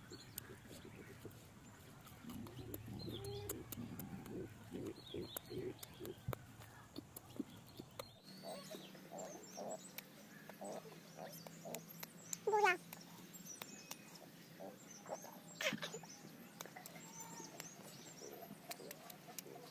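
Faint bird calls with small scattered clicks, and one louder, short call about twelve and a half seconds in.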